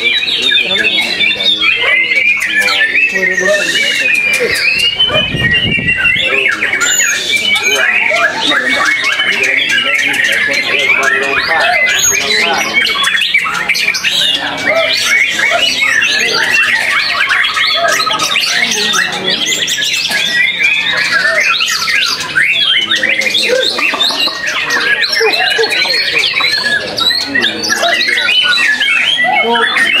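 White-rumped shama (murai batu) singing without a break in a fast, varied stream of whistled and chattering phrases.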